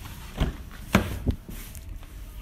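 A Mercedes-Benz GLE's rear door being opened: three short clicks and knocks as the handle is pulled, the latch releases and the door swings open, the second the loudest.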